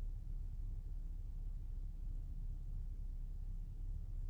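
Steady low background rumble with no distinct sound event.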